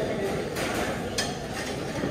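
Restaurant dining-room ambience: a background murmur of voices with clinks of dishes and utensils, and one sharp click a little over a second in.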